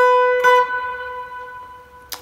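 Electric guitar playing a single high note, picked again about half a second in and left to ring, fading slowly.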